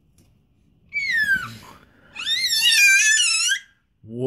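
A baby's high-pitched squeals: a short falling squeal about a second in, then a longer warbling one.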